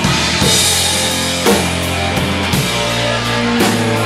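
Live rock band playing an instrumental passage: drum kit with cymbal crashes over sustained bass guitar notes and electric guitar.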